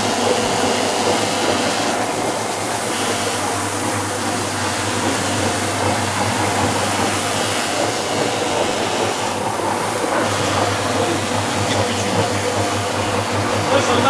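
Single-disc floor machine running steadily with an even hum, its white pad buffing oil into an oak parquet floor.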